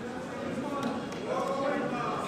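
Indistinct voices of people talking in the background, with no words that can be made out.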